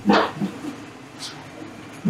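Cloth rag wiping excess flux paste off a copper pipe joint: a brief soft rubbing swish at the start that fades quickly, then faint rustling.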